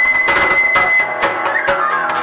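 Live acoustic trio music: a small handheld wind instrument holds one long high, whistle-like note, then slides down near the end. Plucked acoustic guitar and percussion strikes sound beneath it.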